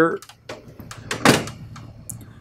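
Plastic ink-tank lock lever on a Canon imagePROGRAF PRO-4000 printer pressed down and latching shut: a few light clicks, then one sharp snap a little over a second in.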